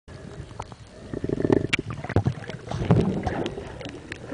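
Muffled water sloshing and bubbling around a camera held underwater, with many scattered sharp clicks and a rougher burst of noise between about one and two seconds in.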